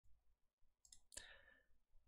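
Near silence broken by a few faint computer mouse clicks about a second in, the last one the loudest.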